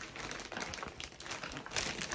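Plastic poly mailer bag crinkling as it is handled, an uneven rustle with small crackles.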